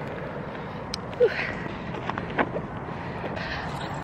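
Steady wind noise on the microphone, with a few light knocks and rustles of clothing as a sweater is pulled off over the head.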